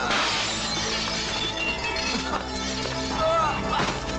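Window glass shattering as a body crashes through it, a sudden crash with a long tinkling decay, and a second crash just before the end, over a film's music score.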